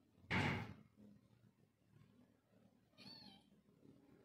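A short, loud thump-like noise about a third of a second in, then, about three seconds in, a kitten meows once, a brief, quieter, high call.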